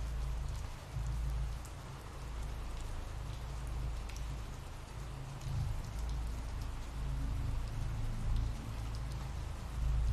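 Ambient rain sound effect: steady rain falling, with a low rumble underneath.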